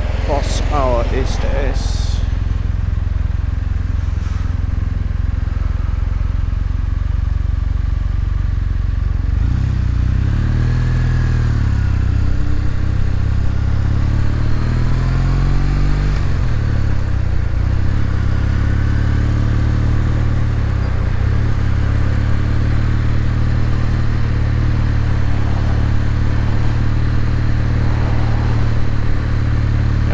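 Kawasaki W800's air-cooled parallel-twin engine running on the road, picked up from the handlebars. Engine speed falls and rises again between about ten and sixteen seconds in, as the bike slows and pulls away through the gears.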